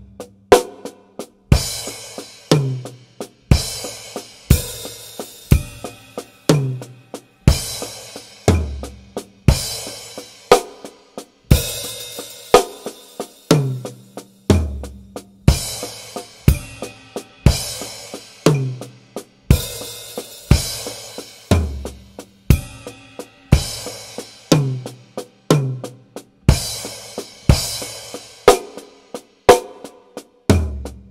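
Acoustic drum kit with Paiste cymbals played at a slow 60 BPM: a steady triplet sticking with accents spread improvisationally across cymbals, toms, snare and bass drum. Accented cymbal strokes with bass drum ring out about once a second over quieter strokes between them.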